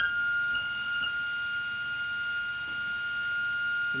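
A ciphering pipe-organ pipe: one high note sounding steadily, unbroken, because a broken leather lets wind into the pipe all the time.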